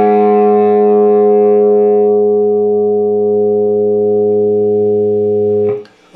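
A single sustained A note on a Gibson Les Paul electric guitar, played as a tuning reference for the song's slightly-sharp-of-E-flat tuning. It rings steadily, slowly fading in its upper overtones, and is muted shortly before the end.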